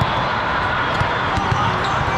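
Busy volleyball hall ambience: many spectators and players talking over one another, with a few dull thuds of volleyballs hitting the floor or being struck, about a second in and again shortly after.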